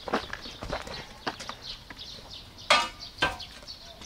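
Footsteps on rough ground and the handling of a heavy tarpaulin cover, a string of irregular light knocks and scuffs, with a louder rustle of the tarp about three quarters of the way through.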